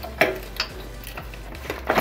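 Hex key working the clamp bolt of a bicycle front derailleur as the clamp is undone: a few scattered sharp metal clicks, the loudest near the end.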